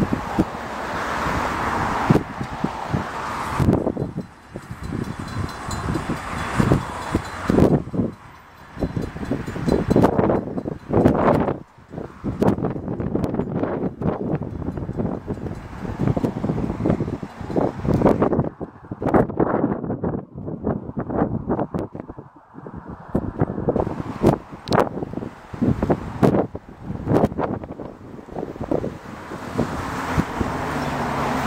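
Wind buffeting the microphone in loud, irregular gusts, over the low sound of slow-moving diesel passenger trains.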